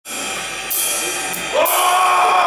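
A live metal band playing loud amplified music, with two sudden loud hits about two-thirds of a second and a second and a half in, and a held note coming in at the second hit.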